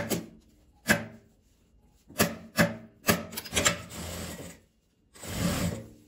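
Fabric and zipper tape being handled on a sewing machine table: two sharp taps about a second apart, then further knocks and stretches of rubbing and sliding as the material is positioned.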